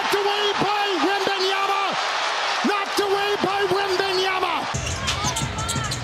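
Live basketball game sound: a ball being dribbled, sneakers squeaking on the hardwood and arena crowd noise. A mid-pitched tone is held in stretches of up to a second and a half, over and over. Near the end the sound changes abruptly to a fuller crowd noise.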